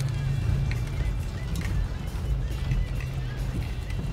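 Inside a car moving slowly over a rough, potholed dirt track: a steady low engine and road drone, with music playing quietly.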